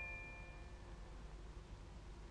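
The last struck note of a mallet-percussion sting, glockenspiel-like, ringing on and fading out within the first second, followed by faint steady hum and hiss.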